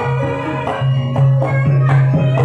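Javanese campursari-style band music: sustained melody and bass notes under drum strokes about twice a second.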